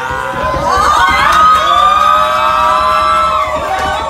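A crowd of party guests screaming and cheering in excitement, many high voices shrieking at once, swelling up over the first second and staying loud.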